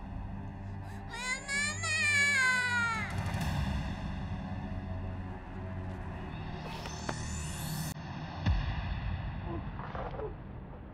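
Tense action-film score: a low sustained drone under a wavering, voice-like high line in the first few seconds. Later a rising sweep builds and is followed by a deep hit.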